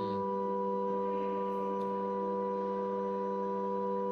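Pipe organ holding a sustained chord: several notes sound together at a steady, unchanging level.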